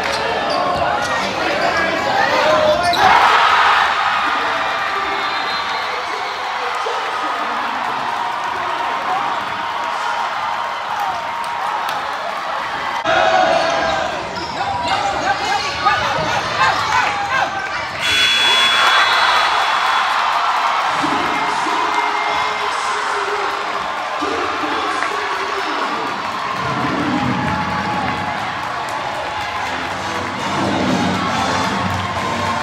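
Live sound of a basketball game in a large gym: crowd noise and voices, with a basketball dribbling on the court. The sound jumps abruptly several times where the footage is cut.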